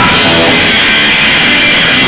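A punk band playing live, loud and steady, with electric guitars and a drum kit. For a moment there is little or no singing.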